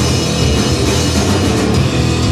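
A rock band playing live: electric guitar through Marshall amplifiers, electric bass and a drum kit, loud and continuous.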